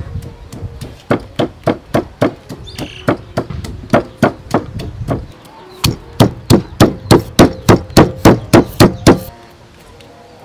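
Wooden pestle pounding red chillies and garlic in a stone mortar: a steady run of dull strikes, about three a second, louder over the last few seconds and stopping just before the end.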